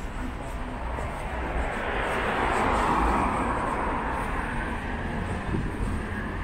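A vehicle passing on the street: a rushing noise that swells to a peak about halfway through and then fades away.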